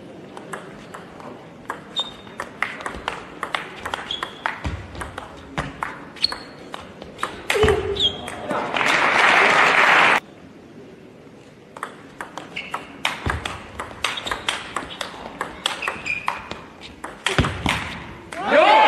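Two table tennis rallies: a plastic ball clicking off rackets and bouncing on the table in quick strokes. The first rally ends about eight seconds in with a short shout and a burst of applause from the crowd, which cuts off suddenly. The second rally runs from about thirteen seconds in to near the end, with applause starting just after it.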